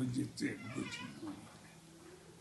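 A small dog whining: a high, wavering cry lasting under a second, starting about half a second in, with low speech around it.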